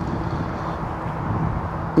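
Steady background rumble of distant motor vehicles, with a faint low hum running through it.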